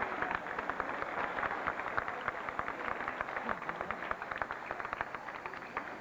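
Audience applauding: a dense, continuous patter of hand claps that eases slightly toward the end.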